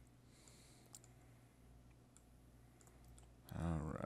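A few faint, separate computer mouse clicks over a quiet background, then near the end a man's short wordless voiced sound, louder than the clicks.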